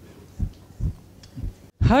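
Three soft, low thumps, a few tenths of a second apart, over faint room tone; a woman starts speaking near the end.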